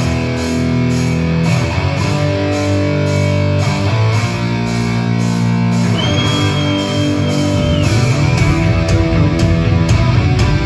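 Heavy metal band playing live: distorted electric guitar, bass and drums come in together at full volume right at the start and drive on with held chords over a steady drum beat. A high held note sounds over the band from about six seconds in, falling away after about a second and a half.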